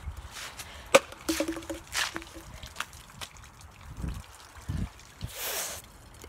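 Plastic water bottle being flipped: a sharp knock about a second in as it lands, then scattered rustling, two dull thumps and a short hiss near the end.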